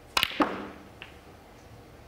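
A snooker cue strikes the cue ball hard in a power stun shot. About a fifth of a second later the cue ball hits the object ball with a second sharp, loud click. A faint click follows about a second in.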